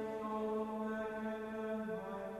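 Unison chant of the Vespers Office by the community in the choir stalls, held on one reciting note and stepping down to a lower note near the end.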